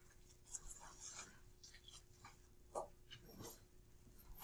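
Dry-erase marker drawing on a whiteboard: a series of short, faint strokes, over a faint steady hum.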